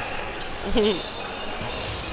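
Echoing sports-hall noise of an indoor hockey game in play, with faint knocks of sticks and ball on the hall floor, under one short spoken 'ja'.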